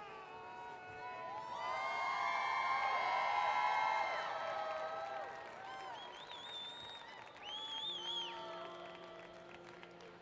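Held musical notes at several pitches swell up loudest a couple of seconds in and fade by about five seconds, with a stadium crowd cheering and giving high whoops later on.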